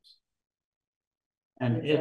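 A pause in speech: about a second and a half of near silence, then a person resumes talking near the end.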